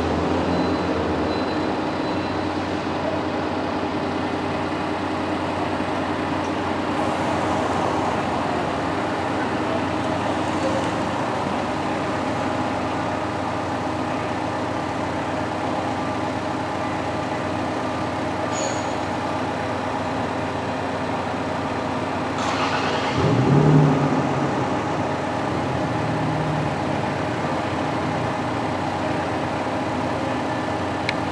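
Heavy diesel engine running steadily over city street traffic, with a louder vehicle passing about 23 seconds in.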